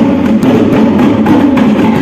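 Reog kendang music: fast, steady hand drumming on small Javanese kendang drums, played loud.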